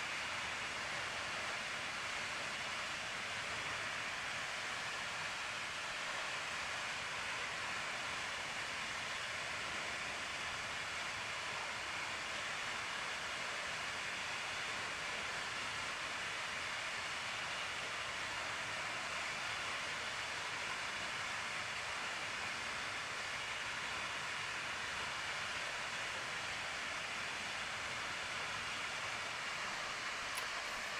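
Waterfall: a steady, unbroken rush of falling water.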